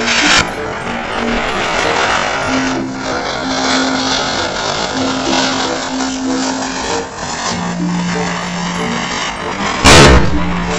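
A chakri ground spinner hissing loudly as it sprays sparks, with background music over it. Near the end a firecracker goes off with a sharp bang.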